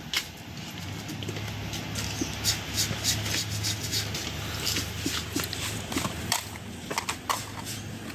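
Scattered clicks and rustles of equipment and cables being handled on a table, over a steady low hum.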